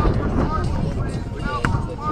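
Players' voices calling out across an open field over a steady low rumble, with one sharp thud of a rubber kickball being kicked about three-quarters of the way through.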